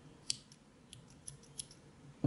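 Small spring-loaded thread snips cutting a strand of cotton yarn: one sharp snip about a third of a second in, then a few fainter clicks.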